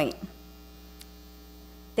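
Steady electrical mains hum, a low buzz with evenly spaced overtones, heard through a pause in speech. A faint click comes about a second in.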